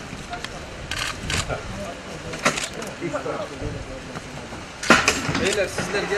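Knocks and clatter of a coffin being handled and loaded into the back of a funeral van, with a few sharp knocks and the loudest one about five seconds in.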